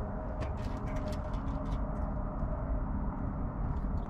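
Steady low background hum with faint, scattered light clicks.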